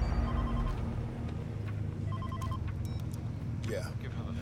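A phone ringing with an electronic trilling ring, two short rings about two seconds apart, over a low rumble.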